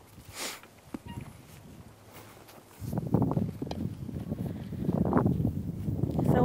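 Wind buffeting the microphone outdoors: a loud, uneven low rumble that sets in about three seconds in, after a quieter stretch with a short hiss and a single click.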